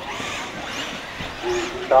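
Electric RC truggies racing on a dirt track: faint high motor whines that rise and fall over a steady hiss.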